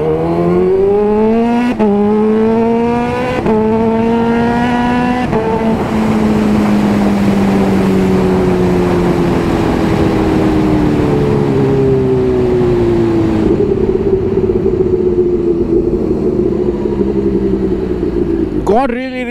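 Kawasaki Ninja H2's supercharged inline-four engine accelerating hard through the gears: the note climbs three times, with a drop at each upshift about two, three and a half and five and a half seconds in. Then, with rushing wind noise, the engine note slowly falls as the bike rolls off, settling to a steadier drone near the end.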